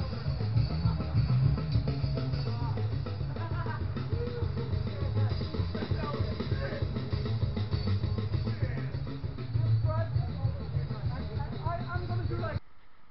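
Rock music: an electric guitar playing over a drum kit beat.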